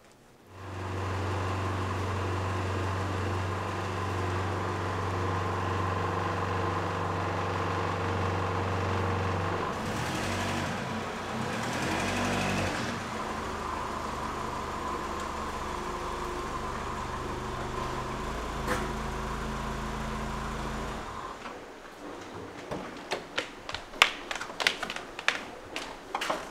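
Toyota Carina car engine running as the car pulls in, its note shifting for a few seconds midway, then switched off abruptly about 21 seconds in. A run of sharp clicks and knocks follows near the end, from car doors and footsteps.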